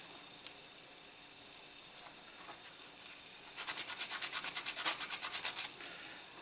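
Sanding stick rubbing back and forth over a hard styrene model-kit leg, smoothing down a seam step. A few faint scrapes at first, then from about halfway a fast, even run of short scratchy strokes for about two seconds.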